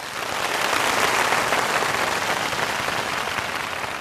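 Audience applauding, building up over the first second and easing slightly toward the end.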